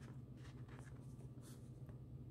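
Faint, brief scratchy rustles of needle and thread being drawn through fabric as a stuffed patchwork seam is hand-stitched closed, over a steady low hum.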